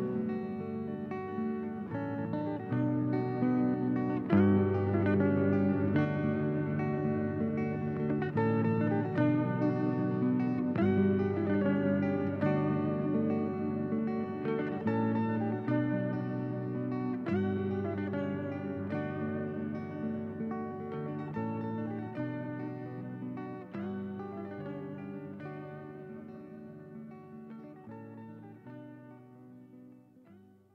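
Solo guitar playing a slow picked passage without drums. It fades out gradually over the last ten seconds or so.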